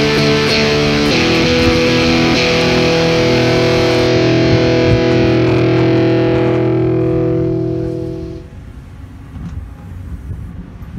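Distorted electric guitar chords in a hard-rock style, with a chord change about a second in and another a little later. A final chord is held, rings out and fades away around eight seconds in, leaving low background noise.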